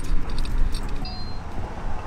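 Wind rumbling on the microphone, with a few light metallic clinks as a studded wheel spacer is handled and brought up to the hub.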